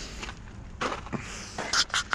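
A few footsteps crunching on fine gravel, as short scuffs about a second in and again near the end, over a low rumble.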